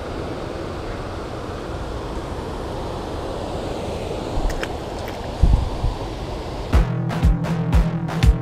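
A steady rush of flowing stream water with wind on the microphone, broken by a couple of faint clicks about four and a half seconds in and a low thump a second later. Electronic music with a steady thumping beat starts near the end.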